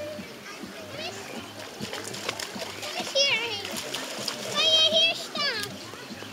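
Young children squealing and calling out as they splash about in shallow water, with loud high-pitched squeals about three seconds in and again near the end.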